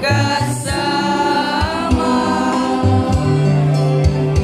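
Many voices singing a song together with held notes, over instrumental accompaniment with a bass line.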